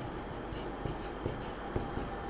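Marker pen writing on a whiteboard: faint scratching strokes with a few soft taps.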